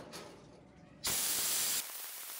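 Water jet from a garden-hose spray gun hissing onto a rusty gas-stove part. It starts suddenly about a second in, loud for under a second, then settles to a softer steady spray.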